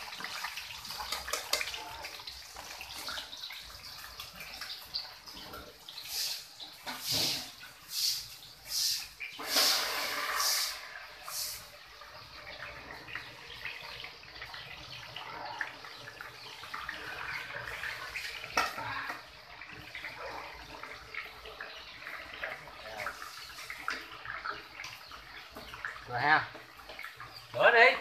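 Climbing perch sizzling as they deep-fry in a pan of hot oil, a steady frying hiss. A run of louder, sharp bursts comes about six to twelve seconds in.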